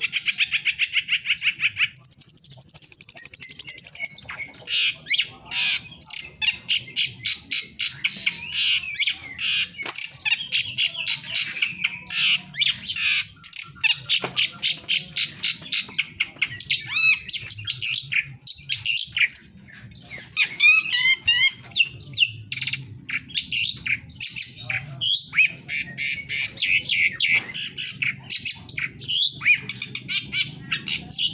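Caged songbird singing a long, fast, unbroken song of rapid high chattering notes, with a buzzy high trill a few seconds in.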